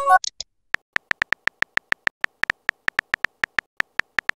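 Simulated phone-keyboard typing clicks from a texting app: short, identical pitched ticks at about six a second as a text message is typed out. A brief chime sounds at the very start as a message bubble pops onto the screen.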